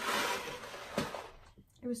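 Rustling from handling a cardboard box of boxed mac and cheese, then a single sharp tap about a second in as the box is set down on a wooden floor.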